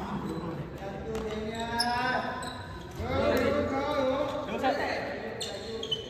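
Indistinct voices of players talking and calling out in a reverberant sports hall, with a few sharp smacks of badminton rackets hitting the shuttlecock, one about two seconds in and two near the end.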